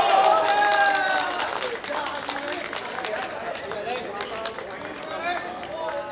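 Men's voices shouting on an outdoor football pitch, loudest for the first couple of seconds and again briefly near the end, over a steady high-pitched insect chorus.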